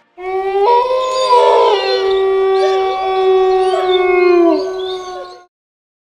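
Wolf howling sound effect: one long howl held at a steady pitch, with higher howls gliding and overlapping above it. It dips in pitch and fades out about five seconds in.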